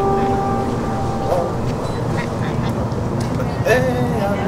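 Outdoor location ambience heard through a boom microphone: a steady low rumble with a steady pitched hum over it. Two short rise-and-fall calls or vocal sounds come about a second in and again near the end.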